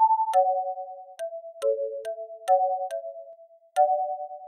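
Background music built in LMMS from sampled singing: a slow melody of clear, pure-sounding notes, mostly two at a time, changing about every half second, each note starting with a click.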